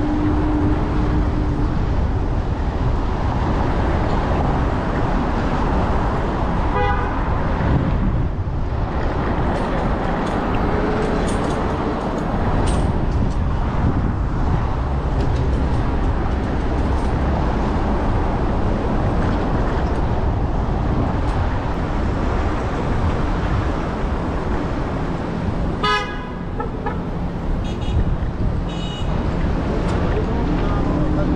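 City street traffic heard while riding, under a steady low rumble of wind on the microphone, with a brief car horn toot about seven seconds in and another near the end.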